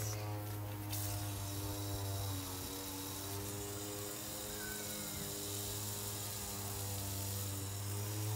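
Garden hose spray nozzle hissing steadily as it showers water over freshly planted soil. Under it runs a steady low hum with several held tones.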